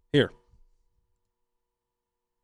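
A man says a single short word, followed by a faint click, then near silence.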